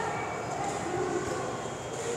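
Steady indoor background noise, a low even rumble and hiss, with faint, indistinct voices in the distance.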